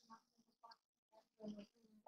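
Faint, choppy fragments of a voice breaking up over a poor video-call connection: short broken bursts of garbled speech with gaps between them.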